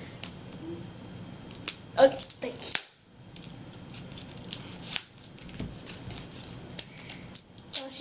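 Scissors cutting into toy packaging: a run of short, sharp snips and clicks, with a brief lull about three seconds in.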